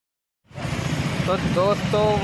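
Silence, then about half a second in a sudden start of a moving motorcycle's running noise with wind rushing on the microphone, a dense low rumble, and a man's voice beginning over it.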